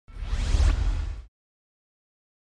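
Logo-reveal whoosh sound effect: a rising, noisy sweep over a deep low rumble, about a second long, that cuts off suddenly.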